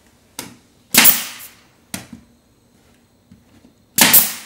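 Nail gun firing a nail to tack panel moulding to the wall: one loud sharp shot about a second in, with lighter knocks shortly before and after it.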